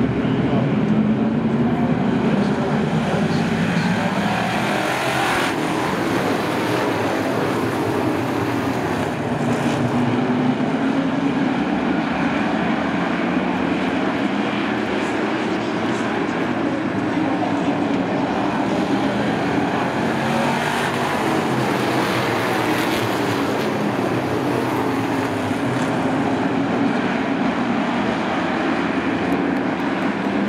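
A pack of stock race cars running around a short oval, their engines one continuous loud drone whose pitch slowly rises and falls as the field goes by and around the turns.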